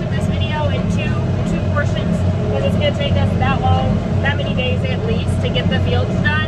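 Tractor engine running steadily under load, heard from inside the cab, with a voice over it.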